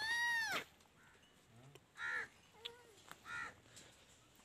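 Crow cawing: one loud caw right at the start, then two fainter caws about two and three seconds in.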